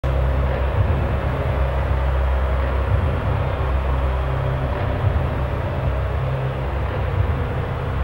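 A steady, loud, deep industrial rumble with a rough mechanical noise over it, like distant heavy machinery: an ambient sound-effect drone with no melody.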